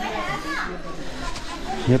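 Faint background voices of people talking, some of them high-pitched. A man's voice starts speaking loudly right at the end.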